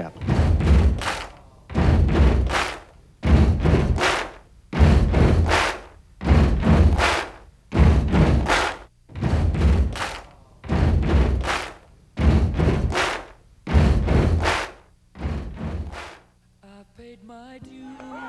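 A loud chant or cheer repeated in a steady rhythm about every second and a half, eleven times, with a heavy thump on each beat; it stops about sixteen seconds in.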